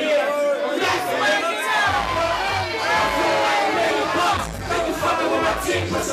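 A crowd of voices shouting and chanting along with a rapper on a microphone, over a hip-hop beat played loud through a PA. The bass drops out for about the first two seconds, then comes back in on the beat.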